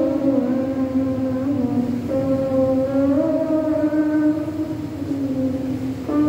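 Voices singing a hymn in long held notes that slide smoothly from one pitch to the next.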